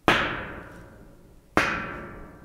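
The original IKEA steel plate, a 1 mm painted sheet with its stiffening folded edges still on, struck twice about a second and a half apart. Each hit rings briefly and dies away within about a second and a half, the high end fading first.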